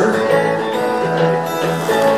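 Acoustic guitar played solo, a shuffle rhythm in A major.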